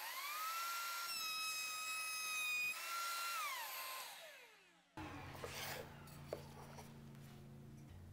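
Router table running with an ogee moulding bit: the motor whine rises and then steadies. It sits slightly lower in pitch for a second or two while a pine board is fed past the bit, taking a shallow S-shaped profile off its edge. The motor then winds down with falling pitch, the sound breaks off about five seconds in, and a faint low hum follows.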